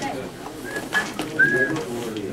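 People talking in the background, with a few short, high, thin chirps in the second half.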